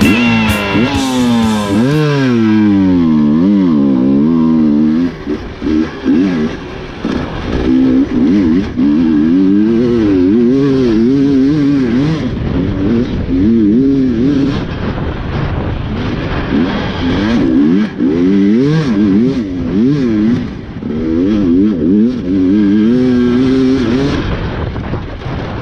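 Husqvarna TE 300 two-stroke enduro motorcycle engine being ridden hard, its pitch climbing and dropping over and over with throttle and gear changes. The tail of guitar music is heard over it in the first two seconds.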